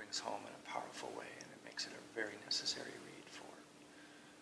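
A man speaking in an interview, his talk trailing off near the end, over a faint steady hum.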